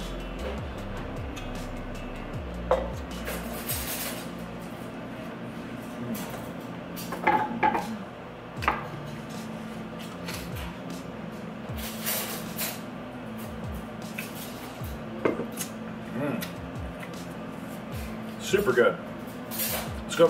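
Tableware being handled on a wooden table: scattered short clinks and knocks of plates, cutlery and a glass, over a steady low background.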